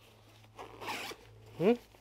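The zipper on a Bellroy Cooler Tote being pulled open: one short rasp lasting under a second, starting about half a second in.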